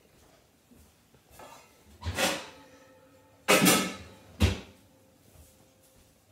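A glass mixing bowl clunking and scraping against a metal baking tray as brownie batter is poured out: a scrape about two seconds in, a louder clunk with a short ring about a second and a half later, then a sharp knock.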